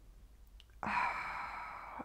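A woman's breathy sigh through the mouth, starting about a second in and lasting about a second.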